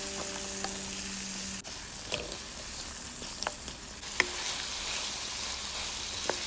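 Diced carrots, potatoes, white radish and peas sizzling steadily in hot oil and masala, stirred with a spatula that scrapes and taps against the pan a few times.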